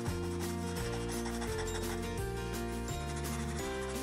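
Watercolor pencil rubbing in short strokes on cardstock, laying down colour lightly. Soft background music of held notes runs underneath, changing every half second or so.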